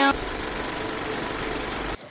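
A steady, even rumbling noise at a constant level, with no clear tone or rhythm. It cuts off suddenly at the end.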